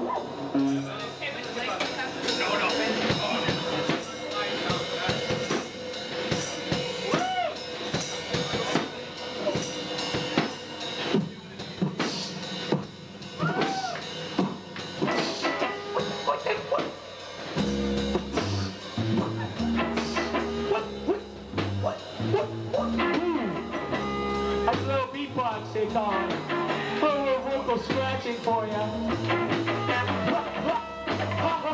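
Live rock band playing a song: drums and snare hits throughout, with a bass line coming in a little over halfway through.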